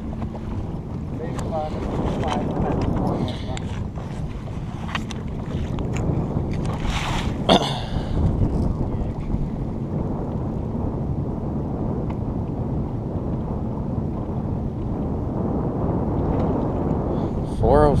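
Wind buffeting an outdoor microphone over choppy open water, a steady low rumble, with a few small clicks and one short, sharp burst of noise about seven seconds in.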